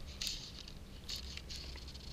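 Fly line being stripped in by hand, about three short hissing zips as the line slides through the fingers and rod guides, over a steady low rumble.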